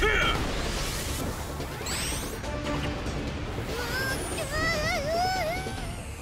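Cartoon action sound effects over background music: a heavy crash at the start, a rising whoosh about two seconds in, then a wavering tone near the end.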